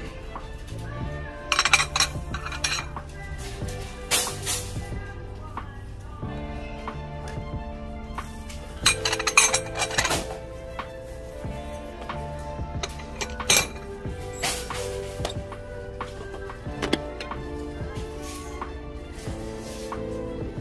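Ceramic plates clinking against each other as they are handled and stacked, in several bursts of sharp clinks over steady background music.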